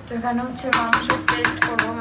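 A quick run of about eight sharp taps in roughly a second and a half, kitchen knocking among metal cooking pots, under a woman's voice.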